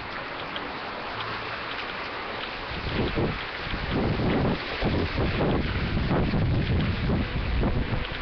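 Wind buffeting the camera's microphone outdoors: a steady hiss at first, then loud, uneven rumbling gusts from about three seconds in.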